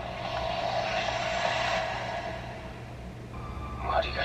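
A swell of rushing noise from an anime soundtrack, building over the first two seconds and then fading, over a steady low hum. A thin steady tone comes in near the end.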